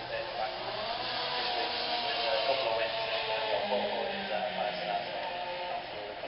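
Indistinct speech through a public-address microphone, blurred by reverberation.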